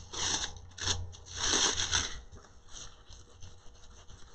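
Metallic foil transfer sheet crinkling and rubbing against the adhesive-coated purse as it is handled: several short rustling strokes, the longest a little over a second in, then fainter ones.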